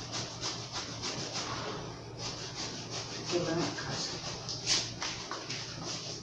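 Knife blade sawing through a thick foam mattress, short back-and-forth scraping strokes at about four to five a second, one stroke louder near the end.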